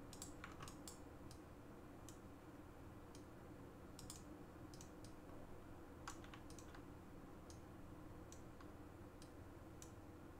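Faint, irregular clicking of a computer mouse and keyboard, a click or two every second or so, over a quiet, steady room hum.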